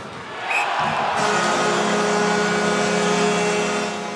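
Ice hockey arena audio at a goal: crowd noise swells, then from about a second in a loud, steady horn-like blast holds on one pitch for nearly three seconds over it.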